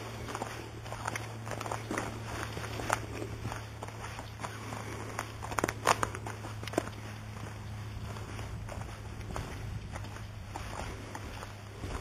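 Footsteps walking along a sandy trail strewn with dry leaves, irregular and close to the microphone, over a steady low hum.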